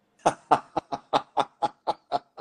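A man laughing out loud in a run of short, even "ha-ha" bursts, about four a second.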